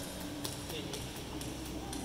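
Faint, distant voices over the hum of a quiet room, with no loud sound.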